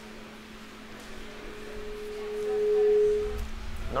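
Public-address feedback: a single pure ringing tone swells over about two seconds and cuts off about half a second before the end, over a steady electrical hum from the sound system.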